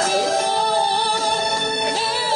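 A male singer holding one long, high note in a female-sounding register, over backing music.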